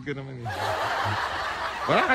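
A man laughing under his breath, a breathy chuckle, with a voice starting up near the end.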